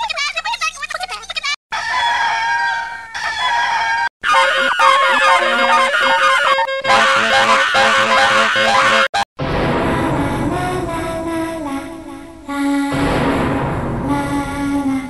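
A jumble of unrelated audio snippets spliced together, each cut off abruptly by a short silence: first fast warbling animal-like calls, then several stretches of music. It is a garbled tape playing on the TV.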